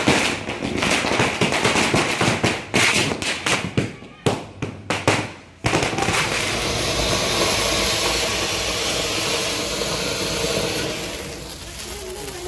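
A string of firecrackers going off in a rapid, uneven run of sharp pops for about the first five and a half seconds. Then, after an abrupt change, a fountain firework sprays sparks with a steady hiss that fades near the end.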